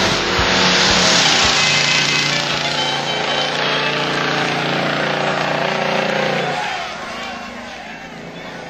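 Engine of a classic Ford Mustang running as the car rolls slowly past, a steady hum that fades away over the last couple of seconds.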